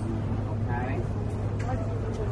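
Steady low hum of indoor store background noise, with faint voices heard briefly.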